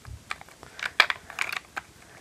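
Light, irregular clicks and taps of small plastic pet figurines being handled and set into a plastic toy car.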